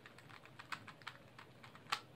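Stickerless 3x3 speed cube clicking faintly as its layers are turned in quick succession through a corner-swap algorithm: a rapid, uneven run of small clacks, the loudest just before the end.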